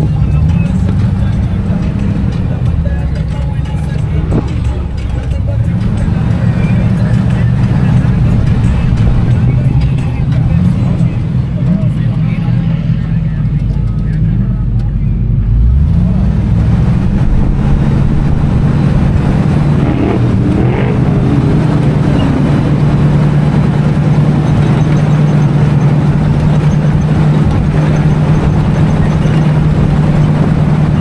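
Off-road 4x4 engine driving over sand dunes, its pitch repeatedly climbing and falling back with throttle and shifts during the first half, then holding a steady note.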